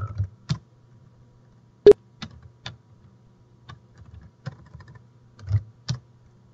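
Typing on a computer keyboard: a dozen or so separate keystrokes, one sharp and much louder about two seconds in, over a faint low steady hum.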